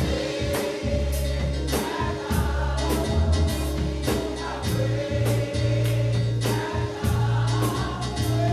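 Live gospel music: voices singing together over keyboard bass notes and a drum kit keeping a steady beat with cymbal strokes about twice a second.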